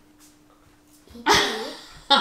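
A single loud bark about a second in, trailing off over about half a second.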